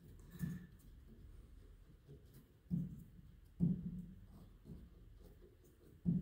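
Soft wooden thumps and faint clicks as the hammers of an 1883 Steinway Model A grand piano action are worked up and down by hand, three more distinct thumps among smaller ones. The hammers are being flexed to loosen (articulate) their hammershank flange hinges, which are tight but in good shape.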